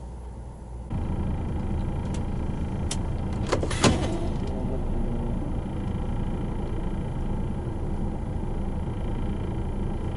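Diesel truck engine running, heard from inside the cab, its rumble stepping up suddenly about a second in and then holding steady. A few sharp clicks and knocks come between two and four seconds in, the loudest near four seconds.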